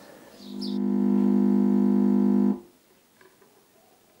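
A single sustained electronic synth tone, fading in and then cutting off abruptly after about two seconds, followed by near silence.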